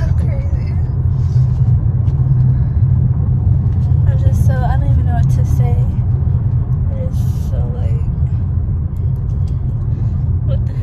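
Car driving, its steady low road and engine rumble heard from inside the cabin. A faint voice breaks in briefly about halfway through.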